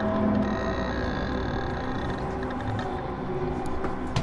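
Dark ambient horror drone: low, steady sustained tones over a rumble, with a thin high shimmer that comes in about half a second in and fades out about two seconds in.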